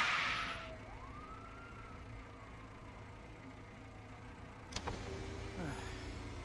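Car pulling away, loud for the first moment and fading within a second, then street background with one distant siren wail that rises and slowly falls. A sharp click comes near the end.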